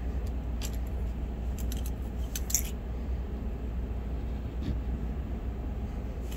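A few small metallic clicks and clinks as the alligator clips and arms of a helping-hands stand are handled, clustered in the first three seconds, over a steady low hum.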